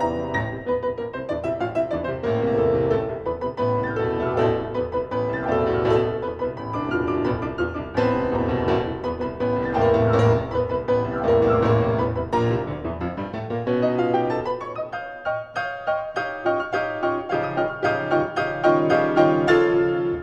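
Piano duo playing a fast galop: quick struck notes over a driving, pulsing bass. The texture thins and drops in loudness briefly about three quarters of the way through, then fills out again.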